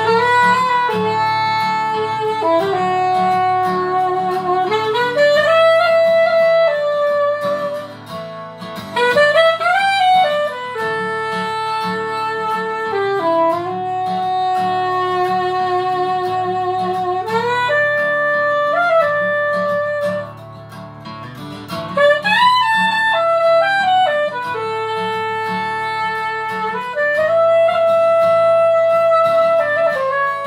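Soprano saxophone playing a melodic instrumental solo of long held notes that scoop up into pitch, over a backing track with guitar.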